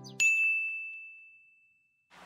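A single bright bell-like ding, struck once just as the background music cuts off, ringing on one clear tone and fading away over about a second and a half.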